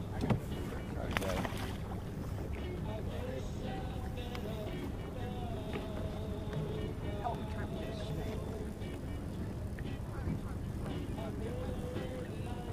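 Steady low rumble aboard a small aluminum fishing boat, with a radio playing faintly in the background. A sharp knock comes just after the start and another about a second in.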